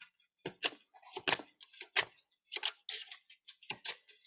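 A deck of oracle cards being shuffled in the hands: a quiet, irregular run of light card clicks, several a second.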